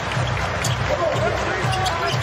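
A basketball being dribbled on a hardwood court, a run of repeated low thuds, over arena music.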